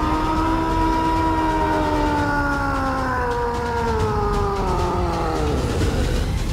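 A titan's roar: one long cry that swells in quickly, slides slowly down in pitch over about five seconds and breaks off near the end, over a steady low rumble.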